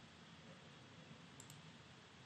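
Near silence with faint room hiss, broken by a quick faint double click of a computer mouse about one and a half seconds in.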